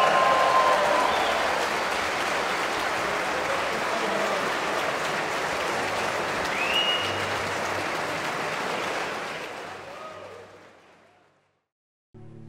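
Large concert-hall audience applauding steadily, fading out near the end.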